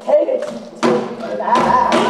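Gayageum byeongchang: a woman singing in Korean folk style while plucking the gayageum, its silk strings struck with sharp attacks just after the start and again just before a second in. A held sung note with wavering ornamentation begins around the middle and carries past the end.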